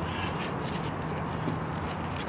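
Faint irregular clicks and shuffles of armoured fighters moving on asphalt, with footsteps and mail and armour clinking over steady background noise.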